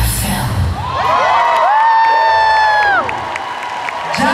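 The dance track ends in the first second, and the audience breaks into cheering. High-pitched screams are held for about two seconds, then stop together, leaving scattered, quieter cheers.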